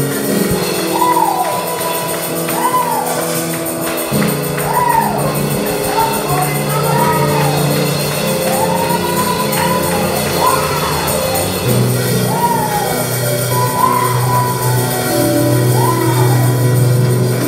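Live gospel music on a church keyboard: sustained chords held for several seconds and changing twice, with a melody line sliding up and down in repeated arcs above them.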